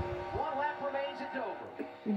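Television race-broadcast audio playing quietly through the TV's speaker: mostly an announcer's voice, with a steady tone underneath.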